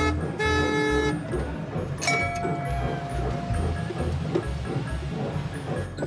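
Two short horn blasts from a ride-on novelty train, each a chord of several steady tones sounding together, in the first second, then a longer single steady tone about two seconds in. Background music with a steady beat runs underneath.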